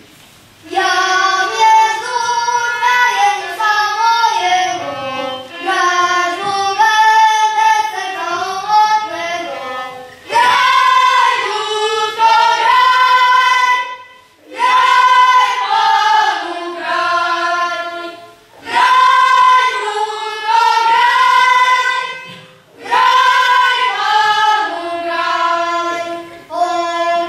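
Children's choir singing a Christmas carol in lines of about four seconds each, with short breaks between them, and a fiddle playing along.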